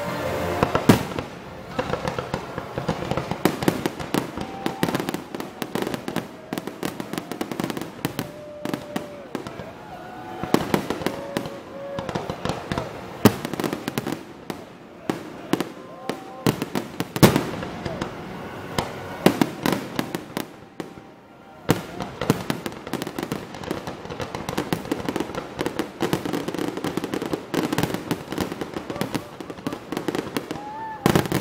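Aerial fireworks display: shells bursting in a rapid, irregular run of bangs and crackles, with a brief lull about two-thirds of the way through before the bursts pick up again.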